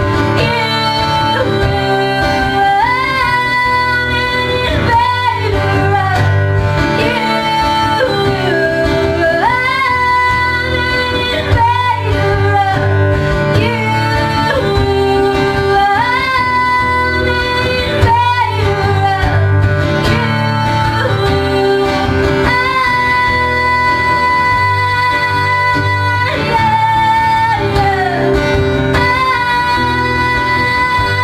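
A woman singing live with acoustic guitar accompaniment, her long held notes sliding up and down between pitches over steady guitar strumming.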